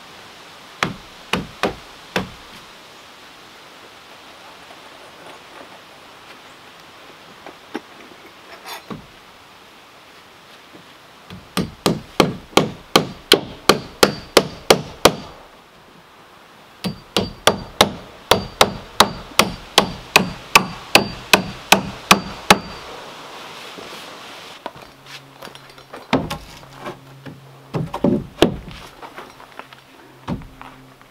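Hammer striking a log porch rail: a few single blows, then two long fast runs of blows at about three to four a second, then a few more blows near the end.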